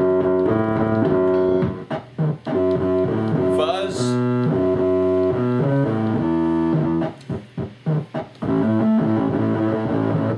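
Casio SK-8 keyboard played through phone effect apps with reverb: held notes and chords changing every second or so, with a rising, gliding sound about four seconds in. From about seven seconds on the notes turn short and choppy.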